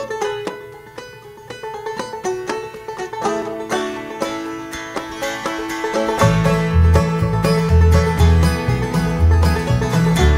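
Instrumental intro of a bluegrass-style string-band song, led by a plucked banjo. More strings fill in about three seconds in, and low bass notes join about six seconds in as the music grows louder.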